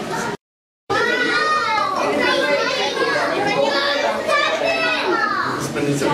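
Many children's voices talking and calling out at once, a dense chatter of young visitors. It is broken by a sudden half-second dropout to silence near the start.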